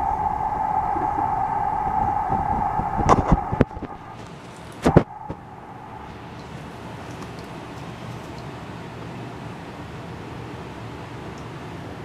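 Knocks of a wooden box with a plexiglass front being handled and set down, the loudest about five seconds in, over a steady mechanical hum that cuts off about three and a half seconds in, leaving low room noise.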